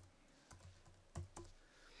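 Faint typing on a computer keyboard: a few separate keystrokes as a word is typed.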